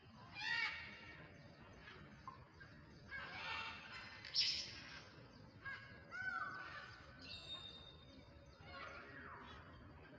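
Birds calling on and off: short harsh calls, the loudest about half a second and four and a half seconds in, and sliding whistled notes that fall in pitch around six and nine seconds in.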